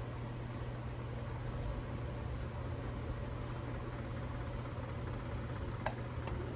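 A steady low hum under an even hiss, with no distinct knocks or clicks.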